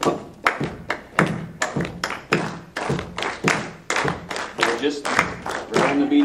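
Many people stomping their feet, patting their chests and clapping together in a short-long samba rhythm, a steady run of thumps and claps several times a second.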